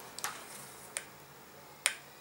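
Three light clicks of handling a hot glue gun and satin ribbon, the last and sharpest near the end as the glue gun is brought to the ribbon.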